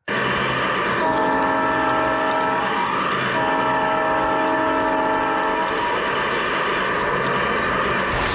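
A G-scale model diesel locomotive running along its track, heard from on top of it, with a steady running noise of motor and wheels. A chord horn sounds twice: a blast of almost two seconds starting about a second in, then a longer one after a short gap.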